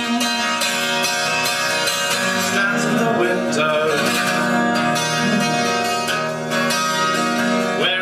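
Steel-string acoustic guitar strummed in a steady rhythm of chords, with a man's voice singing over it at times.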